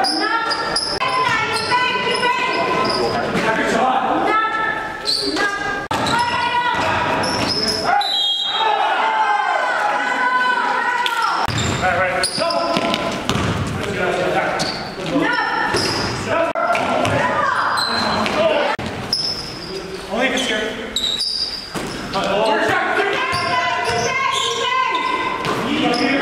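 Basketball bouncing on a hardwood gym floor during play, with indistinct players' voices in a large, echoing hall.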